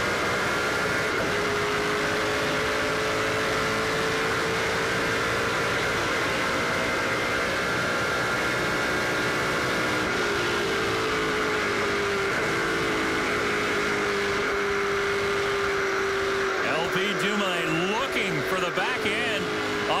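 A NASCAR Pinty's Series stock car's V8 engine, heard from inside the cockpit, running at a steady high pitch under full throttle down a long straight. From about three seconds before the end the pitch swoops down and up several times as the driver brakes and downshifts for the corner.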